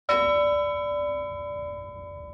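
A single bell-like metallic chime, struck once at the very start, its several tones ringing on and slowly fading.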